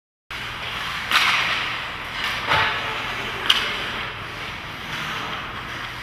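Ice hockey rink game sound: a steady hiss of rink and crowd noise with sharp cracks of sticks, puck or boards about one, two and a half and three and a half seconds in. The sound starts abruptly after a brief silence.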